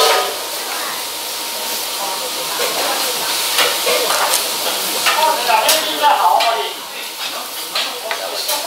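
Busy restaurant din: a steady hiss of kitchen noise runs throughout. Background voices come in around five to six and a half seconds in, over light clicks of chopsticks and dishes.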